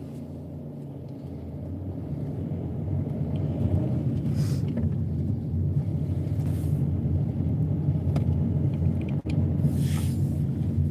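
Low rumble of a car driving slowly, heard from inside the cabin. It grows louder two to three seconds in and then holds, with a brief dropout near the end.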